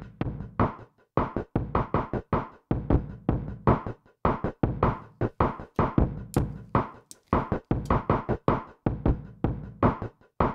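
Acoustic-style drum beat playing through a Chase Bliss Generation Loss MKII tape-emulation pedal, driven into saturation so the drums sound blown up. A steady pattern of sharp drum hits, several a second.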